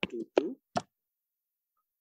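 A few short clicks and clipped voice fragments in the first second, then dead silence.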